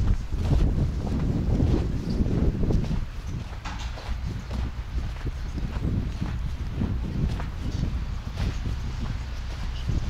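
Footsteps on snow, a run of uneven soft knocks, under wind rumbling on the microphone; the wind is strongest in the first few seconds.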